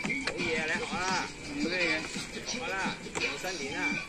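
Indistinct voices whose pitch rises and falls, without clear words, over a steady high tone, with a couple of short sharp knocks.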